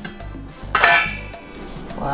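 A metal pan lid lifted off a frying pan, with one ringing clank about a second in, over background music.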